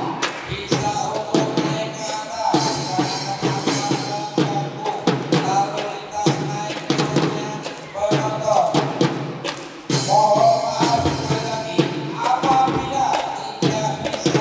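Young children's drum band playing a piece: drums keep a steady beat under a melody, with glockenspiels among the instruments.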